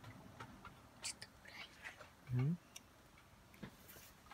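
A person's short wordless "hm?" with rising pitch a little past the middle, among faint scattered clicks and rustles.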